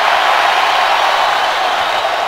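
Large arena crowd cheering steadily, with no single voice standing out.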